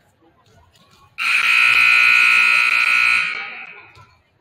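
Gym scoreboard horn sounding one long, loud blast of about two seconds. It starts suddenly a second in and dies away in the hall's echo, the signal that the scoreboard clock has run out.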